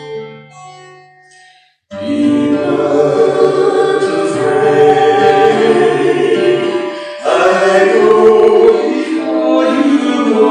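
A woman and a man singing a worship song as a duet with a strummed acoustic guitar. The music fades away in the first second and drops to near silence, then comes back in abruptly and loudly about two seconds in.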